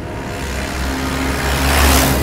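A police jeep driving past close by: its rush of engine and tyre noise swells to its loudest near the end, over background music.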